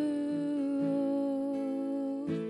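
A woman's voice holding one long sung note that sinks slightly in pitch, over soft acoustic guitar picking: a slow worship song.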